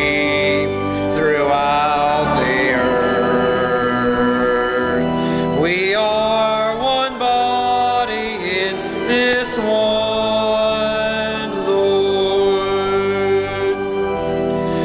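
A church hymn sung with instrumental accompaniment, the voice moving between long held notes.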